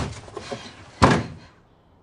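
A single loud, sharp slam about a second in, after some lighter knocking and handling sounds. It dies away within half a second.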